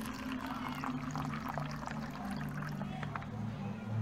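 Water poured from a small glass into a thin plastic cup, a light trickling stream, over a steady low background hum.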